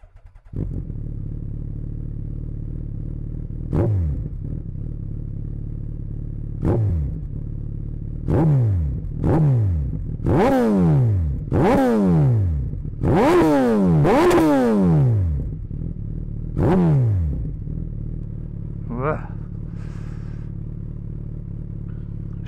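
Suzuki B-King's 1340 cc inline-four idling and revved at standstill with about nine throttle blips, each rising sharply and dropping back to idle, the hardest ones in a cluster in the middle. It breathes through a modified exhaust: factory headers and catalyst with the EXUP valve kept, a shortened Y-pipe and cut-down stock mufflers with Yoshimura dB killers, for a bassy, soft note rather than a loud bark.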